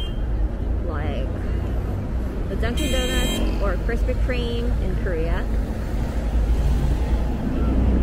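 City street traffic: cars, taxis and buses driving past with a steady engine and tyre rumble, and passersby talking. A short shrill tone cuts through about three seconds in.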